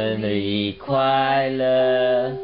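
Low male voice chanting two long held notes, with a short break just under a second in, over the steady ringing tone of a small hand-struck brass gong.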